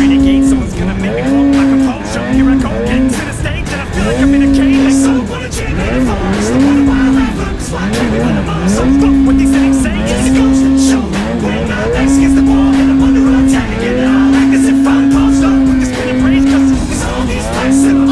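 Polaris snowmobile engine revving hard and easing off again and again as it is throttled through deep snow, its pitch climbing, holding steady for a second or two, then dropping.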